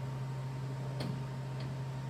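Steady low hum from an idling Savioke delivery robot, with a sharp click about a second in and a fainter one just after.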